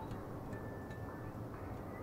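Quiet background music, with one faint held note a little after the start.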